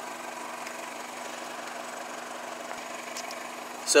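A car engine idling steadily in the background, kept running to supply power to a battery.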